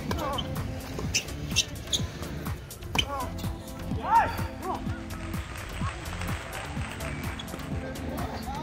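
Tennis rally on a hard court: sharp racket hits and ball bounces, over steady background music.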